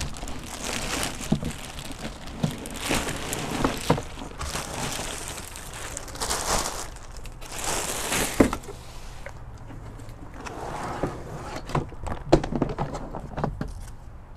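Clear plastic bags crinkling and rustling in repeated swishes as stiff floor liners are slid out of them, with a few knocks as the liners are handled.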